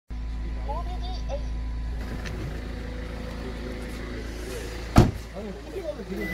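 Kia Carnival minivan's engine idling steadily, heard from inside, then a car door shut with a single loud thud about five seconds in.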